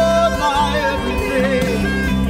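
Live church worship band playing: a voice sings a melody with wavering held notes over keyboard and guitars, with steady bass notes underneath.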